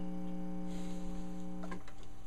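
A steady low hum holding several even pitches, with a faint brushing hiss about a second in and a soft click near the end, where the hum cuts off.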